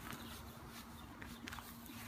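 Faint rustling and tearing of grass turf and roots as a cut strip of sod is peeled up by hand, with a few small snaps after about a second and a faint steady hum underneath.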